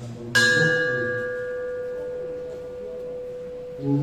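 A small metal bell struck once, about a third of a second in, then ringing on with a long fading tone, its higher overtones dying away first.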